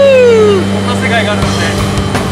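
Steady drone of a jump plane's engines heard inside the cabin, with a person's long shout that rises and then falls in pitch in the first half second. The steady drone breaks up about a second and a half in.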